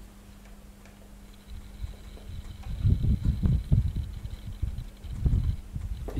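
Irregular low knocks and rumbles from a pen writing by hand on paper, starting about two and a half seconds in, over a faint steady electrical hum.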